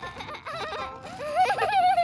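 A cartoon character's wordless vocal cry, its pitch warbling up and down, starting about a third of a second in.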